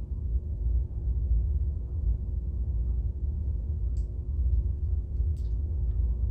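Steady low room rumble with a faint constant hum, and a couple of faint ticks in the second half.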